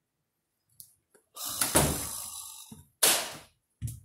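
An interior room door being handled: a faint latch click, a longer noise as the door moves, then a sudden sharp thud about three seconds in and a shorter knock just before the end.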